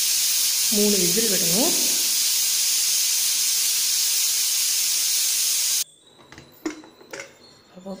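Stovetop pressure cooker whistling: steam jets out under the weight valve in a loud, steady hiss that cuts off abruptly about six seconds in. The whistle is the sign that the cooker has reached pressure.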